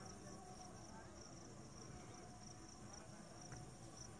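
Faint, steady high-pitched chirring of crickets or similar insects in dry grass, pulsing gently, over near silence. A faint single click about three and a half seconds in.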